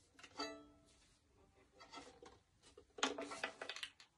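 Faint violin strings: a string is plucked once about half a second in and rings away. Near the end come a cluster of quick knocks and string sounds as the violin is handled and brought up to the chin.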